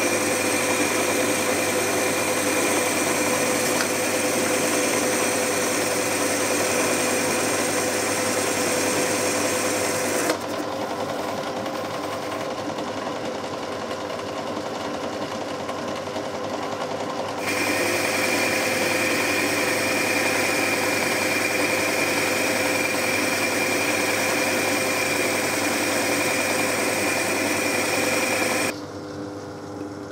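Myford ML7 metal lathe running at about 1100 rpm while a carbide tool turns down an aluminium bar: a steady mechanical whine with a held tone. About ten seconds in it turns quieter and duller for some seven seconds, then comes back, and it stops shortly before the end.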